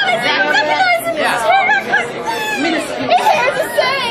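People talking over one another at close range: lively, unclear chatter and exclamations between several voices.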